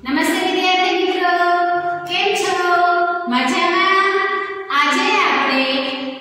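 A woman singing a slow melody unaccompanied in a high voice, holding long notes in phrases of one to two seconds with brief breaths between them.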